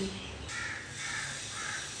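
A bird calling faintly three times, about half a second apart, over a low steady background hum.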